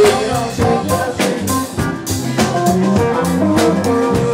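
Live rock band playing an instrumental funk jam: two drum kits keep a steady beat under bass, keyboards and electric guitars, with no singing.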